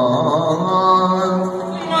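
Male Yakshagana bhagavata singing a long, wavering, ornamented note over a steady drone, easing off near the end.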